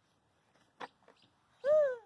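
A single light tap a little under a second in. Near the end comes a short wordless call from a young child, rising and then falling in pitch.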